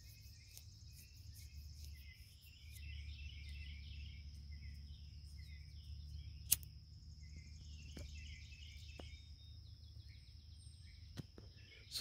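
Faint garden ambience: a steady high insect trill with repeated short bird chirps and twitters over a low background rumble. A single sharp click comes about six and a half seconds in.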